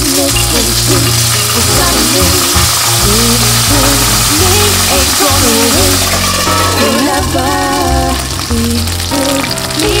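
Thawed mixed seafood (shrimp, clams and squid) sizzling in hot olive oil in a frying pan. The loud, steady frying hiss starts suddenly as the seafood drops into the oil.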